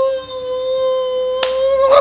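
A voice holding one long, high sung note, sliding up into it and then steady. A sharp click about one and a half seconds in.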